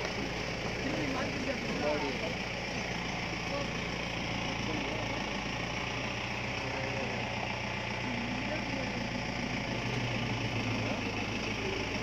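A vehicle engine running steadily at idle, a low hum, with people's voices talking indistinctly over it.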